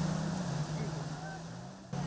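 Muddy floodwater rushing and churning through a breach in an embankment dike, easing somewhat near the end, with a steady low engine-like hum underneath.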